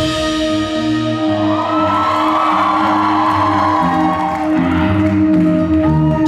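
Instrumental passage of a live pop-rock song: acoustic and electric guitars over a long held note and a stepping bass line, with some audience cheering underneath.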